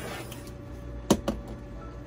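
Two sharp clicks about a second in, a fifth of a second apart, over a faint steady hum.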